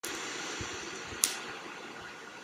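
An open microphone line cutting in abruptly out of dead silence: a steady background hiss of room noise, with a single sharp click about a second in.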